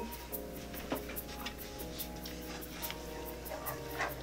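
Background music with held chords over a steady ticking beat of about four ticks a second.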